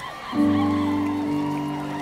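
Piano chord struck sharply about a third of a second in and held, ringing on and slowly fading, with a lower note added about a second later.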